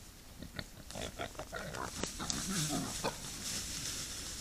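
Eurasian beavers making short, low vocal calls mixed with a few sharp clicks, most of them between about one and three seconds in.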